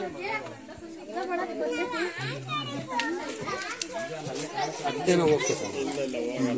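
Several voices talking and calling over one another, children's voices among them.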